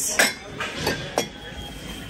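A few light clinks of ceramic and glass items knocking together on a shelf, three short ones within about a second, over store background noise.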